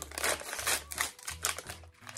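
A small surprise packet being torn open and crinkled between the fingers: a string of irregular crackles and clicks.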